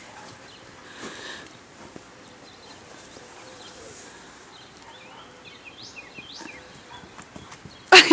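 Horses' hooves on the sandy floor of a pen as the horses move around, heard as faint, scattered soft hoofbeats over a quiet outdoor background.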